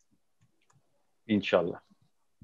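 A gap of dead, gated silence with a few faint clicks, broken about a second in by one short spoken word or sound of a voice lasting about half a second.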